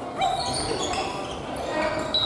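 Busy sports hall during family badminton play: players' shoes squeaking briefly and repeatedly on the wooden gym floor, over voices in the background.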